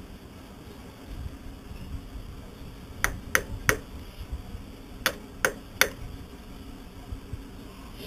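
Sharp taps or knocks on a fiberglassed plywood backing block as it is worked into place, in two quick sets of three, about a second and a half apart.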